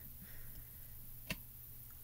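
Quiet handling of a clear acrylic stamp block on a card panel, with one light, sharp click about a second in as the stamp is lifted off the inked card; a low steady hum runs underneath.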